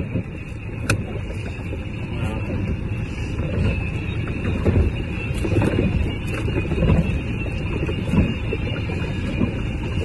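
Wind buffeting the phone's microphone in an open boat: an uneven low rumble that rises and falls in gusts, with a sharp click about a second in.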